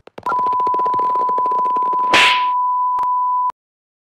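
A steady, high standby-style beep tone held for about three seconds over a fast rattle of clicks, the cartoon sound of wrestling a stethoscope out of a stuck fanny-pack zipper, with a short rushing noise about two seconds in. The tone cuts off suddenly.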